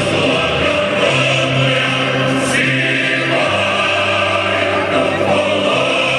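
Choral music: a choir singing long held notes over a low, slow-moving accompaniment.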